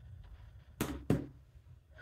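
BlindShell Classic 2 phone set down on a tabletop: two sharp knocks about a third of a second apart, the second louder, over a low steady hum.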